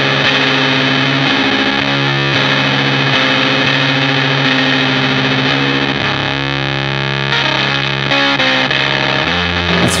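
Electric guitar played through the fuzz side of a combined fuzz and reverb pedal, fuzz alone with no reverb or bit crushing. Thick distorted notes and chords are held and change every second or so.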